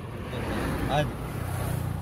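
Petrol pouring from a container into a plastic measuring jug, splashing as the jug fills, over a steady low engine hum.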